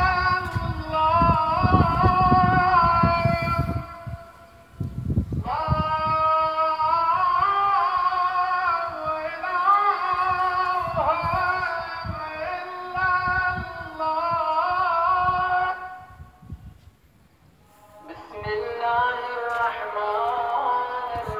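A solo voice singing or chanting in long, drawn-out melodic phrases, breaking off briefly about four seconds in and again near the end before starting a new phrase.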